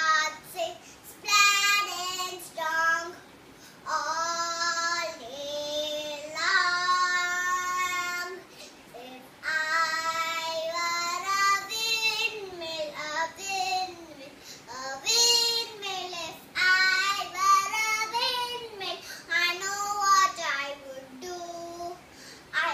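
A young girl singing alone without accompaniment, in phrases of held notes separated by short pauses for breath.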